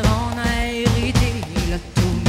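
Live folk-rock band music with a drum kit keeping a steady beat and a woman singing lead.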